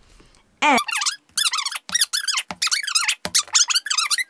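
A rapid series of high-pitched, wavering squeaks like whimpering, starting less than a second in and going on in short bursts of about half a second each.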